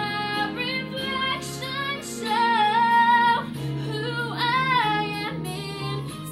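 A young woman singing solo over a recorded instrumental backing track, holding long notes with vibrato; the loudest held note comes about halfway through, and another follows shortly after.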